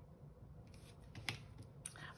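Faint scratching of a pen colouring in on a card, then a couple of light clicks as the pen is set down on a wooden table near the end.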